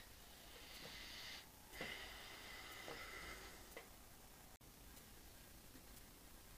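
Near silence with a faint hiss and a few light clicks as a leaking compressed-air fitting on top of the engine's cylinder is tightened.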